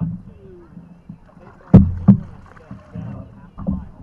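Hollow knocks on a canoe hull: one sharp, loud knock a little before halfway, a second one right after, and a pair of duller thumps near the end.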